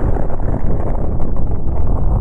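Deep, continuous rumble of a large explosion, loud and heaviest in the low bass.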